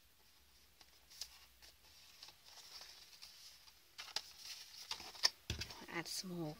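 Folded cardstock being handled and pressed together: faint paper rustling and small clicks, getting busier in the second half, with a soft knock about five and a half seconds in.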